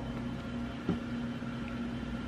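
Steady low hum of a running appliance with one even tone, and a soft click about a second in.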